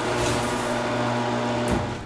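Electric roller door motor humming steadily as the garage door rises, stopping with a short clunk near the end.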